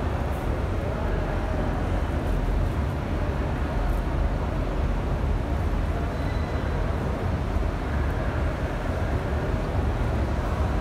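Steady low rumbling ambience of a large, busy indoor hall, heard through a phone microphone carried by someone walking.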